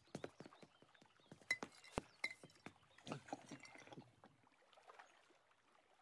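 Near silence with faint, irregular footsteps and small taps, thinning out after about four seconds.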